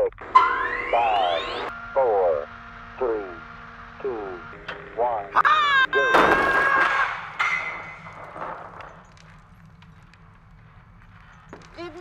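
Sound effects for an ejection seat test: a rising electronic whine, steady tones and a few falling tonal sweeps about a second apart, then a loud burst of rushing noise about six seconds in that dies away over a couple of seconds as the seat fires.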